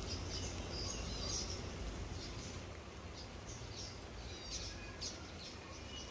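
Small birds chirping in short, scattered high notes over a steady low background rumble.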